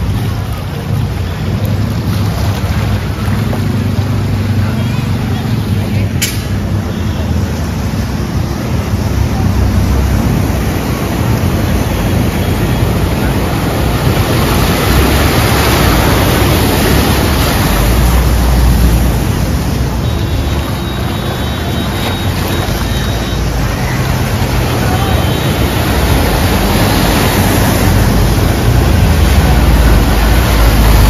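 Motor vehicles driving through deep floodwater: engines running under a steady wash of water surging and splashing around the wheels. The splashing is loudest about halfway through, as a jeep ploughs past close by.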